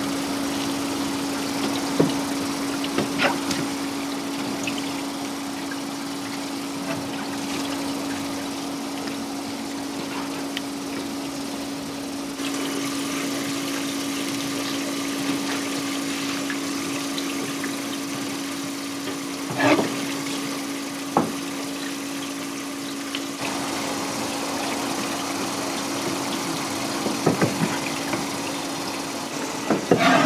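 Tap water running steadily onto a plastic cutting board, its sound shifting a couple of times as the flow is moved, over a steady hum. A few sharp knocks of a knife against the board.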